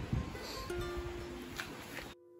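Background music with a plucked string instrument playing held notes, over a low uneven rumble on the microphone.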